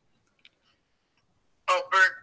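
Near silence, broken by one faint tick about half a second in; a person starts talking near the end.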